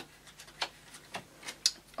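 Bicycle playing cards being dealt face down onto a cloth-covered table: a series of soft, irregular clicks and taps as each card is set down.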